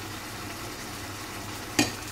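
Chicken keema sizzling steadily as it fries in a pot on a gas hob. A short sharp click sounds near the end.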